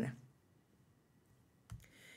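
Near silence of a small studio, broken near the end by a short, sharp click.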